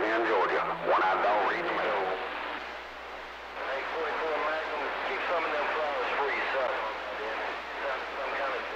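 A distant station's voice coming in over a CB radio speaker under a steady hiss of static, clear for the first couple of seconds and then fading down weaker in the noise as the skip signal drops.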